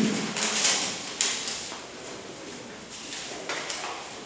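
Paper rustling in several bursts as ballot papers are taken from the box and opened by hand, with a sharp click about a second in. A short dull thump at the very start is the loudest sound.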